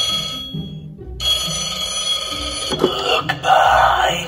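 Novelty skull rotary telephone prop ringing electronically, two rings separated by a short gap. Near the end come a few clicks and clatter as the handset is lifted off the cradle. Background music plays underneath.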